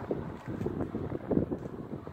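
Wind buffeting a phone's microphone: an uneven low rumble in gusts, strongest a little past halfway.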